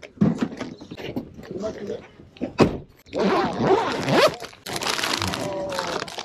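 A zippered first-aid kit pouch being unzipped and its plastic-wrapped packets handled and rustled, with people talking over it.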